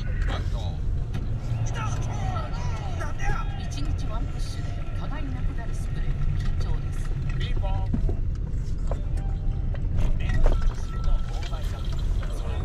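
Steady low road and engine rumble inside a slowly moving car's cabin, with indistinct voices and music playing over it.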